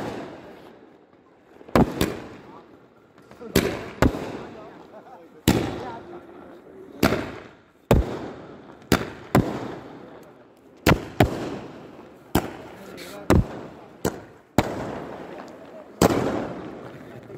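Fireworks going off: a string of about fifteen sharp bangs at irregular intervals, roughly one to two seconds apart, each trailing off in an echo.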